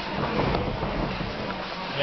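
Steady room noise in a gym with indistinct background voices, in a lull between the coach's shouts.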